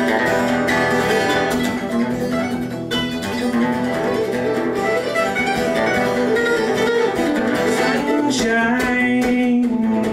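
Mandolin and acoustic guitar playing together live, the mandolin picking quick melody lines over the strummed guitar in a purely instrumental stretch.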